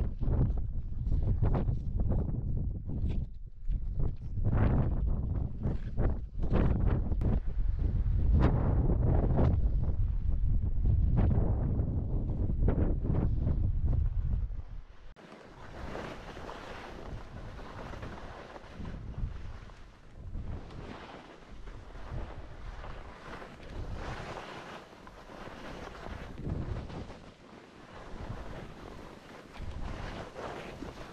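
Strong wind buffeting the action camera's microphone in a loud low rumble, with irregular crunching boot steps in snow. About halfway through the rumble gives way to a quieter, gusting wind hiss.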